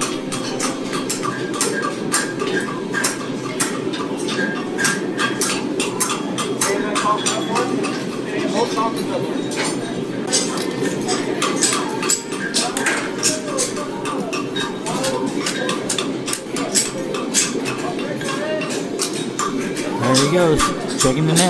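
Farriers' hammers striking steel horseshoes on anvils: a rapid, irregular run of sharp metal blows, a few a second, as the shoes are worked to match each other during the final pairing-up.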